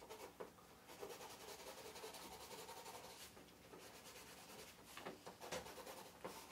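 A marker pen drawn quickly back and forth over a paper plan on an easel to highlight a line: faint, rapid rubbing strokes.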